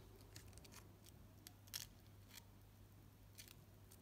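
Near silence: room tone with a low steady hum and a few faint, scattered clicks from fingers handling folded glitter craft-foam petals.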